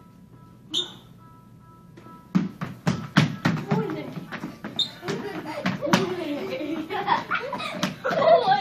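Children's feet stamping and thudding on a wooden parquet dance floor as they dance, a quick run of sharp thumps starting about two seconds in.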